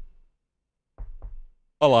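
Two short knocks about a second in, a quarter second apart, after a stretch of dead silence.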